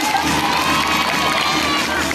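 A large crowd of schoolchildren cheering and shouting, with one shrill voice rising and falling above the rest, as the dance music gives way.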